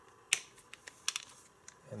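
Sharp plastic clicks as a disc is pried off the centre hub of a black plastic Blu-ray case: one louder click about a third of a second in, then a few lighter clicks about a second in.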